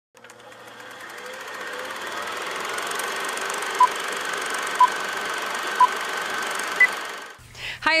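Film-countdown-leader sound effect: a steady whirring film-projector clatter fades in, with four short beeps a second apart, the last one higher in pitch, then cuts off. A woman says "Hi" at the very end.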